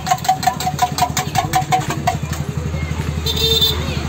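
A spoon beating eggs in a steel tumbler: rapid ringing metal clinks, about six a second, that stop about two seconds in. A low steady hum runs underneath, and a brief hiss near the end comes as the beaten egg is poured onto the hot griddle.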